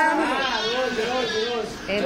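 A young girl's high voice talking in a drawn-out, wavering way, the pitch rising and falling with no break for most of the two seconds.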